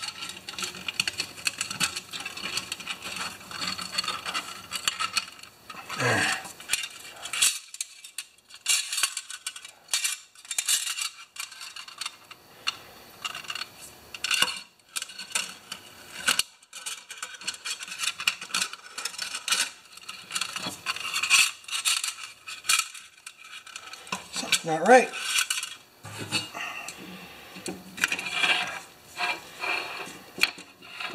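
Flat steel recoil-starter spring of a Honda HRA214 being wound by hand into its plastic rewind housing: irregular metallic clinks, scrapes and rattles as the spring strip rubs and taps against the housing.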